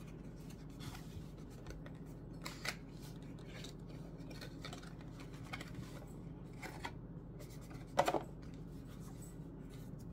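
Faint handling sounds of a coin presentation box being slid out of its cardboard outer sleeve: light rubbing and scattered soft clicks, the most noticeable a brief rustle about eight seconds in.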